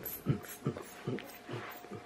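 Faint soft thuds repeating about two to three times a second: bare feet stepping and bouncing on the floor while dancing.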